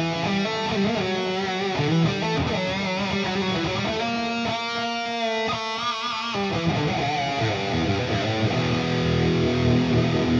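Electric guitar played through the Fortin NTS amp-simulator plugin on its lead preset, with a multi-tap delay after it. It plays a lead line of single notes, with one note held for about two seconds around the middle.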